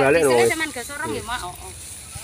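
A man talking for the first second or so, loud at first and then fainter, followed by quieter outdoor background with a faint steady high hiss.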